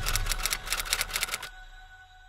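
Typewriter keystroke sound effect: a quick, even run of key clicks that stops about one and a half seconds in.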